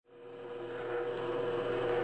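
Drill press motor running steadily while a plug cutter bores into the end grain of a walnut strip. The hum fades in over the first second.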